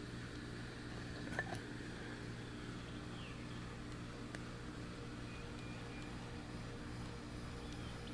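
Steady low hum in the background, with one faint light click about a second and a half in as a bare 1095 carbon-steel knife blank is lifted off its pins on a wooden test board.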